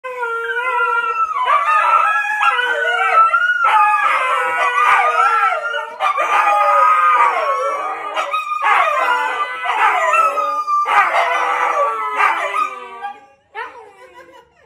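Three Siberian huskies howling together: several long, wavering howls overlap in drawn-out phrases with short breaks every few seconds, and the chorus dies away shortly before the end.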